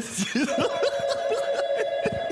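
Theatre audience laughing and chuckling. About half a second in, a steady electronic telephone ring starts under the laughter, signalling an incoming call.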